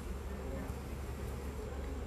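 A steady low buzzing hum with an even level and no sudden sounds.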